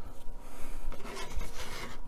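A wooden model deck piece being slid and turned round on a cutting mat by hand: an irregular rubbing, scraping noise, busiest in the second half.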